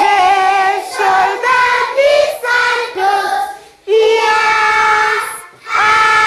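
A class of young schoolchildren singing an action song together in unison, in short sung lines with a longer held note about four seconds in.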